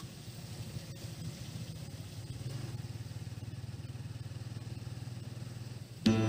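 Vehicle engine running steadily while driving along a street, heard from inside the vehicle; the low hum grows a little stronger about two seconds in.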